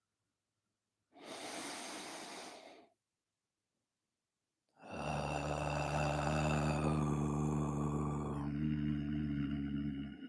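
A man takes a deep breath in, then chants one Om held on a single steady pitch for over five seconds. The open vowel closes into a hummed 'mm' near the end.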